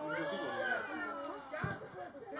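High, drawn-out shouted calls from players, rising and falling in pitch, with a dull thud near the end.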